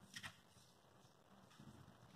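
Near silence: quiet lab room tone, with one faint, brief rustle or click shortly after the start, likely from handling the small sample container.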